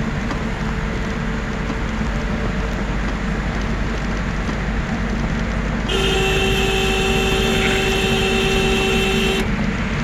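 Steady engine and tyre rumble heard inside a vehicle driving on a snow-covered road. About six seconds in, a vehicle horn sounds one long steady blast lasting about three and a half seconds, then stops abruptly.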